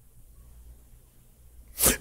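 Quiet room tone through a pause in a man's speech, ending near the end in a short, sharp breath-like burst just before he speaks again.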